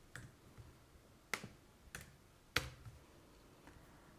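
Faint, scattered clicks of computer keys and a mouse as text is typed into a form field: about six short clicks at irregular spacing, the loudest a little past halfway.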